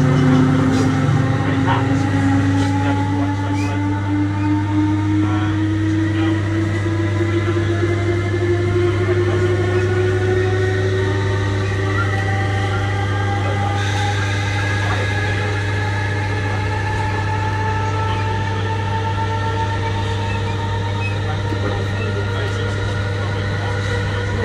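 Class 317 electric multiple unit heard from inside the carriage, its traction motors whining in several tones that rise slowly in pitch as the train gathers speed, over a steady low hum and rail running noise.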